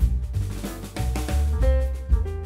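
Instrumental background music with a drum-kit beat, bass and held keyboard-like notes.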